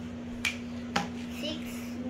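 Two sharp clicks about half a second apart from a plastic dry-erase marker cap being snapped onto the marker.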